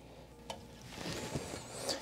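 Faint handling of a plastic and rubber toilet flapper as it is fitted onto the ears of the overflow tube inside the tank: a small click about half a second in, then light rubbing.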